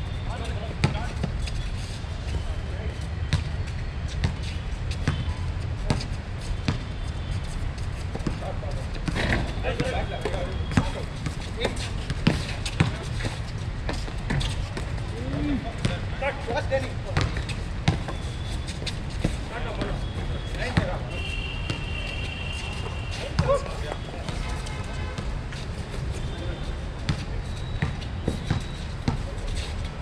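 A basketball bouncing on a hard outdoor court again and again during play, each bounce a short sharp knock, with players' indistinct voices and calls in the background.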